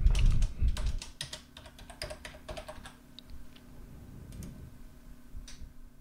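Typing on a computer keyboard: the key clicks come quickly for about the first two seconds, then only a few single clicks now and then.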